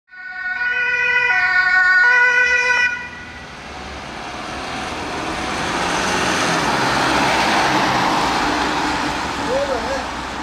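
A two-tone siren alternates between two pitches, about three quarters of a second each, and cuts off abruptly about three seconds in. Then a Mercedes Sprinter ambulance drives past with its engine and tyre noise, swelling to a peak a few seconds later and fading.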